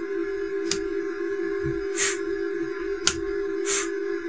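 Steady electronic tone from the radio test setup, holding one pitch with a fainter higher overtone, as the CB transmitter is keyed into the amplifier under repair. Two sharp clicks and two short hissy swishes break in over it.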